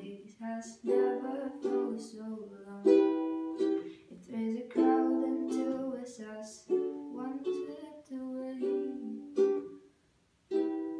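Ukulele strummed in slow chords, each chord ringing out and fading before the next strum, with a brief break near the end.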